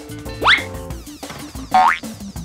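Two quick rising cartoon boing sound effects, one about half a second in and one near the end, over light background music.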